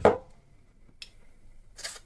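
Aerosol can of WD-40-type penetrating lubricant giving a brief spray into an opened bicycle gear shifter, a short hiss near the end, with a small click about a second in.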